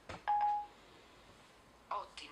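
A light tap on an iPhone 5, then a short single-tone electronic beep from the phone: Siri's chime that it has started listening.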